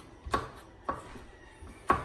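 Kitchen knife chopping green beans on a wooden cutting board: three sharp knocks of the blade on the board, unevenly spaced, the last one the loudest.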